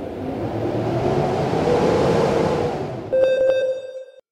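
A rushing, rumbling noise that swells up steadily, then about three seconds in gives way to a sharp, ringing electronic tone with two quick clicks.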